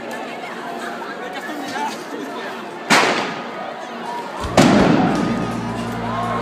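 Two loud firecracker bangs over young people chattering, the first about three seconds in and the second, louder one about a second and a half later. Music comes in with the second bang.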